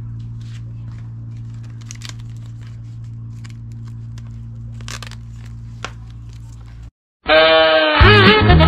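Decal sheet's paper backing and clear vinyl film rustling and crackling in the hands, a few scattered sharp crackles over a steady low hum. The sound cuts out briefly and music starts near the end.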